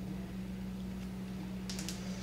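Steady low hum of room tone, with a quick cluster of three or four small clicks near the end.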